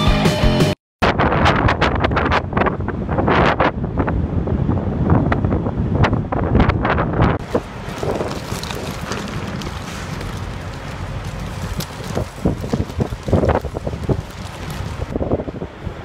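Background music for about the first second, cut off abruptly, then wind buffeting the camera microphone in irregular gusts, a loud rumbling rush with crackles.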